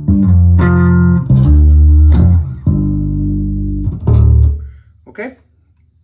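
Landing five-string electric bass with two EMG active pickups, front pickup blended with a little of the back pickup, playing a short line of plucked notes. One note is held for about a second, and the last note fades out a little before the end.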